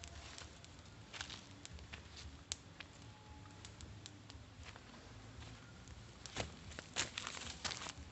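Faint, scattered crackling of a small stick-and-leaf campfire, with a denser run of crackles and dry-leaf rustles near the end.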